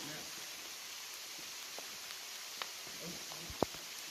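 Steady hiss of heavy rain, with a few faint ticks and one sharp click about three and a half seconds in.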